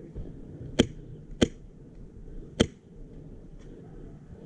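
Three single semi-automatic shots from a Krytac MK18 airsoft rifle running an HPA Wolverine Gen 2 engine, each a short sharp crack; the second follows the first after about half a second and the third comes about a second later.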